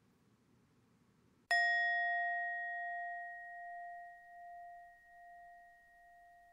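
A single struck bell, about a second and a half in, ringing out with a clear tone that fades slowly with a gentle wavering.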